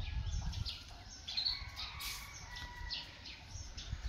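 Small birds chirping: short, high calls, several a second, over a low rumble.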